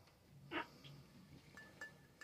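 Near silence: room tone, with one faint short sound about half a second in and a few faint ticks near the end.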